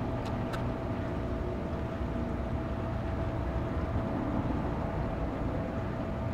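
Steady low rumble with a faint constant hum, like machinery running without change, and two light clicks close together near the start.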